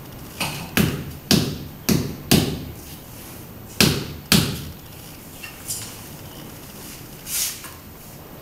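Sharp knocks on patterned cement floor tiles being tapped down to bed them into wet mortar: five about half a second apart, a pause, then two more. A fainter knock and a short scrape follow near the end.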